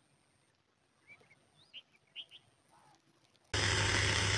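A few faint bird chirps, then a loud, steady hissing noise starts abruptly near the end.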